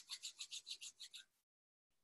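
Faint, quick back-and-forth rubbing of palms against each other, about six or seven strokes a second, fading and stopping a little over a second in.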